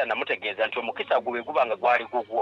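A person talking through a mobile phone's speaker: continuous speech with a thin, phone-quality sound, missing the upper range of the voice.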